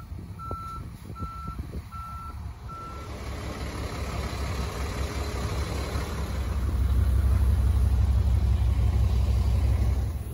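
A truck's reversing alarm beeps steadily, about two beeps a second, and stops about three seconds in. A low rumble then builds and is loudest over the last few seconds.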